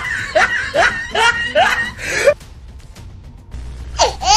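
Laughter sound effect: a run of short, pitch-sliding 'ha' calls, about two or three a second, that cuts off suddenly a little past halfway, leaving only a faint low hum.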